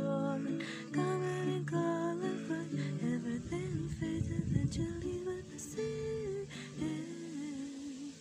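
Song accompaniment on acoustic guitar, strummed chords with a melody line over them, in an instrumental passage; it grows gradually quieter over the last few seconds.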